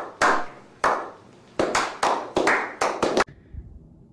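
A person clapping, about a dozen claps that start slow and speed up, stopping a little past three seconds in.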